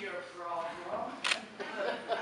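Children's voices speaking dialogue on stage, with one sharp click about halfway through.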